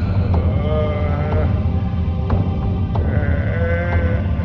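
A man's anguished, wavering cries from a film clip, twice, each about a second long, over a low steady hum.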